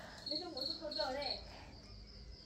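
Faint high-pitched insect chirping: four short chirps in quick, even succession in the first second and a half.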